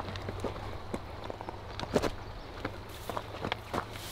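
Scattered light knocks and taps from scrambling and handling on the rocks at the river's edge while a trout is landed by hand, over a steady low rumble of outdoor background noise.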